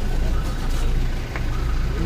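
Car engine running as the car moves off at low speed, a steady low rumble, with faint voices in the background.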